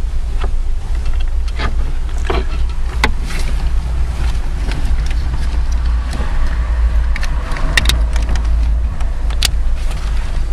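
Plastic connectors and the wiring harness behind a car dashboard being handled as an interface module is fitted: scattered sharp clicks and knocks over a steady low rumble.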